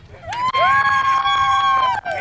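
Two people cheering with long, held whoops that slide up in pitch at the start, over scattered hand clapping.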